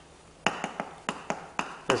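Chalk tapping on a blackboard while numbers are written: about seven short, sharp taps, starting about half a second in.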